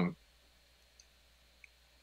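The end of a spoken "um", then near silence with two faint, brief clicks, one about a second in and one near the end.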